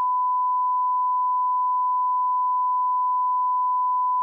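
Steady 1 kHz sine-wave test tone, the reference tone that goes with television colour bars, held at one pitch and level without a break.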